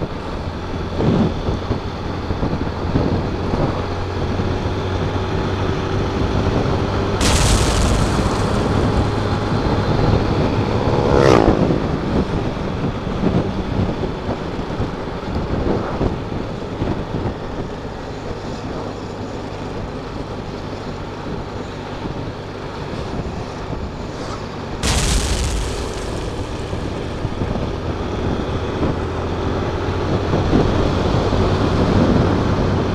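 A 150cc motorcycle engine running steadily at road speed, with rushing wind and road noise. Two sudden loud rushes of noise come about 7 seconds in and again about 25 seconds in, and a brief falling tone is heard about 11 seconds in.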